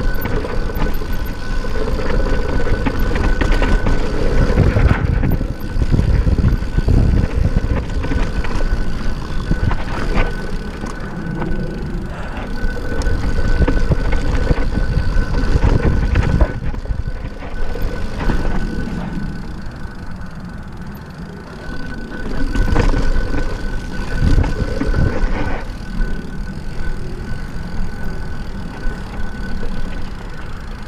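A Yeti SB6 full-suspension mountain bike riding a dirt singletrack: tyres rolling over dirt, with frequent knocks and rattles from the bike over bumps and heavy wind buffeting the camera's microphone.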